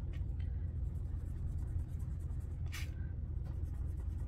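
Marker pen scribbling on a paper sheet as a small icon is coloured in, with one short, sharper stroke about three seconds in, over a low steady hum.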